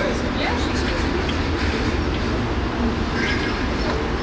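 Steady low rumble of an aerial tramway cabin riding along its cables, heard inside the cabin, with passengers' voices faint in the background.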